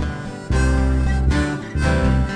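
Country band's instrumental fill between sung lines: a strummed acoustic guitar over sustained low notes, with two strong strums about half a second in and near the end.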